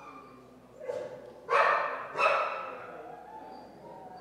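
A dog barking: a short softer bark about a second in, then two loud barks about two-thirds of a second apart, each echoing in the room.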